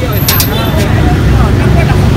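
Motor scooter engines running close by, a steady low rumble that grows near the end, under the chatter of people talking. A few sharp clicks come about a quarter second in.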